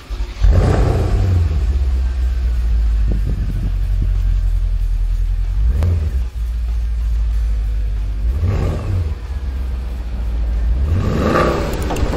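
A vehicle engine starts suddenly about half a second in and settles into a deep, steady idle rumble. It is revved briefly three times: near the middle, about two-thirds through and near the end.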